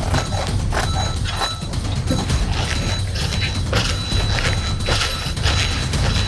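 Metal push-up counting machines clacking and knocking rapidly and irregularly as several people pump out push-ups at speed, over a low rumble.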